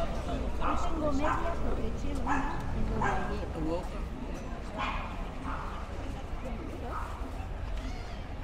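A dog barking repeatedly in short yips, roughly one a second, growing softer in the second half, over a steady low outdoor rumble.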